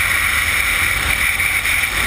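Steady rush of wind buffeting the skydiver's camera microphone during the parachute descent, loud and even, with a low rumble beneath.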